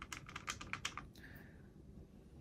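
Watercolour brush scrubbing in a dry paint pan to activate the paint: a quick run of light clicks, about eight in the first second, then a short, soft swish.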